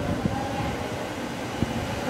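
Steady low rumble of background noise, with no speech.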